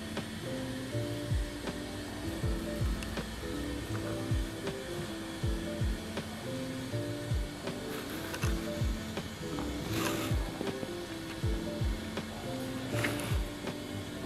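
Background music: a melody over a regular deep kick-drum beat.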